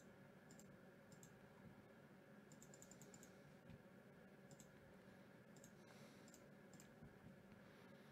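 Faint clicks of a computer mouse in near-silent room tone: single clicks every second or so, with a quick run of several about two and a half to three seconds in.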